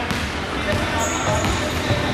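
A basketball being dribbled on a hardwood gym floor, bouncing repeatedly.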